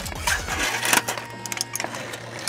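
Aluminium foil crinkling as it is handled, irregular crackles through the first second, with a low steady hum coming in after that.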